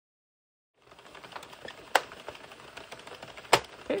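Plastic circular knitting machine being cranked, its needles clattering steadily as they run past the cam, with two sharper clicks along the way. The sound starts about a second in.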